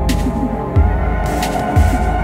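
Instrumental intro of an electronic world-music track. A deep bass pulse repeats a little faster than once a second under a sustained droning pad, with airy hiss-like swells above.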